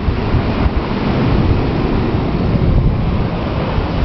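Wind buffeting the microphone: a loud, steady rush of noise, heaviest in the low rumble.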